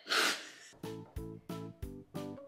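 A short, breathy burst from a person, then background music starting just under a second in: a bouncy tune of plucked notes over a low beat, about three notes a second.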